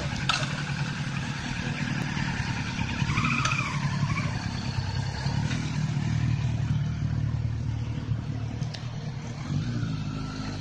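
Kawasaki Z900RS's inline-four engine running at low revs as the motorcycle pulls away and rides off, swelling slightly a few times and fading a little near the end.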